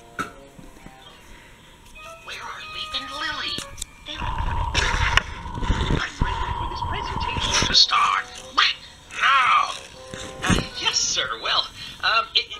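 A child's electronic toy sounding short beeping tones and a tune, with loud rustling and handling noise from about four to eight seconds in, then sing-song voice sounds near the end.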